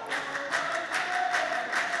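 A line of men clapping their hands in unison to a steady beat, the rhythmic group clapping of a tarouq chorus line, with one faint held note underneath.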